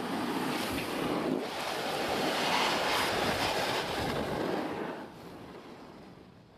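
A rushing, wind-like noise with no pitch, building to its loudest around the middle, dropping about five seconds in and then fading out.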